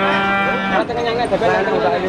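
Cattle mooing: one long, steady moo that ends a little under a second in, followed by shorter, wavering calls and sounds.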